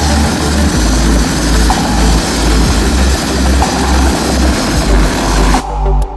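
Helicopter hovering low over a landing pad: loud, dense rotor and engine noise that cuts off abruptly near the end, with a music beat underneath.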